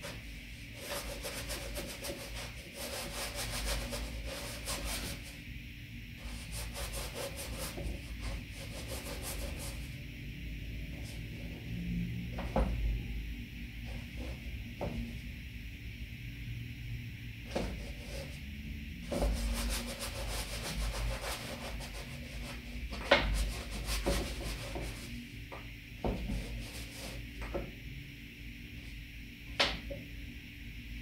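A paintbrush dragging oil paint across a canvas in scratchy, rubbing strokes that come in stretches, with a few sharp knocks of the brush against the canvas.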